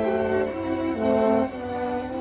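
Orchestral film score led by bowed strings, playing held notes that move to a new pitch about every half second.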